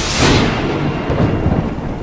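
A thunderclap sound effect: a sudden loud crash at the start, dying away into a low rumble.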